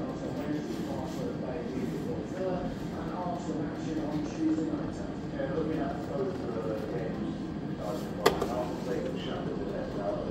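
Indistinct voices talking in the background, with one sharp click about eight seconds in.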